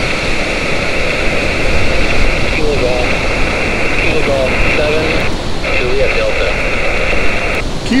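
Xiegu G90 transceiver's speaker on 17-metre SSB: a band of hiss from the receiver, with a faint, distant station's voice breaking through it in short phrases a few seconds in. The hiss drops out briefly a few times. The voice is a station answering a CQ call.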